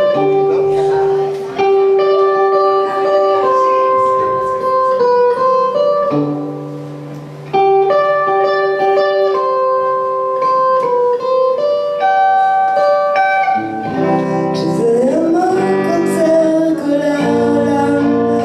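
Clean-toned Fender Stratocaster electric guitar playing a slow melodic passage of held single notes. About fourteen seconds in, a woman's singing voice comes in, sliding upward in pitch.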